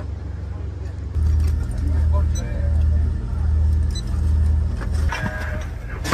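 Low rumble of an idling engine, swelling and fading about once a second; it starts abruptly about a second in and drops away near the end.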